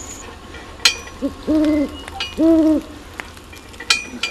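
An owl hooting twice, two short even hoots about a second apart, with sharp clicks just before and just after.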